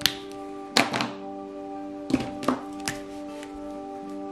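A few sharp knocks and clicks of plastic markers being handled on the table, set down, picked up and uncapped, over steady background music.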